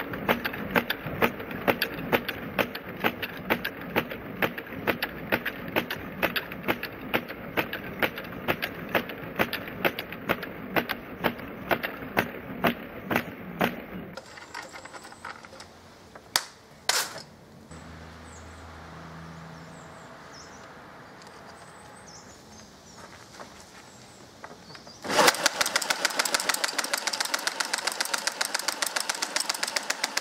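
Rubber-band full-auto pencil slingshot firing in rapid bursts: a long run of sharp clacks, about three or four a second, as the wooden mechanism cycles and pencils strike a block of ballistic gelatin. Midway it goes quieter, with two loud clicks. A faster, louder burst of shots then fills the last five seconds and cuts off abruptly.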